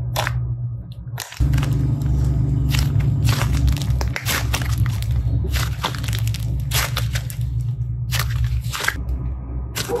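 Soft modelling clay being squeezed, folded and pulled apart by hand, giving irregular sticky crackles and squelches, over a steady low hum, with a brief break a little over a second in.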